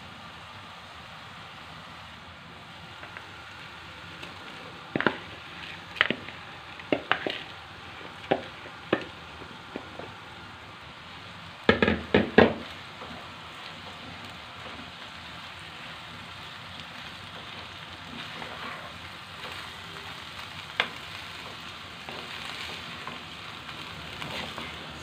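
Grated carrots sizzling in butter and olive oil in a nonstick pan while drained rice is added and stirred in with a wooden spoon to toast it for pilaf. Over the steady sizzle come scattered sharp knocks and scrapes of the spoon against the pan, loudest in a cluster about halfway through.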